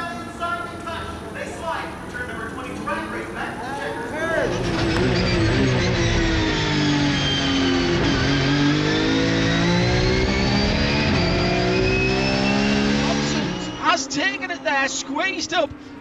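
Porsche 992 GT3 Cup car's flat-six engine heard from inside the cockpit, starting about four seconds in. Its note drops for about three seconds as the car slows, then climbs steadily for about five seconds as it accelerates hard.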